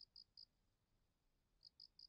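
Faint cricket chirping: short, quick chirps at one high pitch, about five a second, a few at the start, then a gap, then another run near the end.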